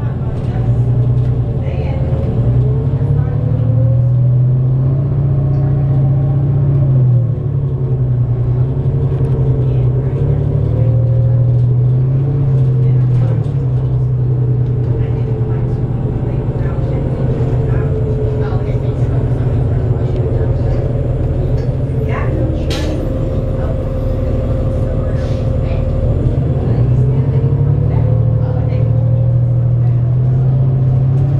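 Cummins ISL diesel engine of a 2008 New Flyer D35LF transit bus heard from inside the cabin, very rumbly, pulling away and cruising, its pitch rising and falling as the Allison automatic works through the gears. A sharp click or rattle about two-thirds of the way through.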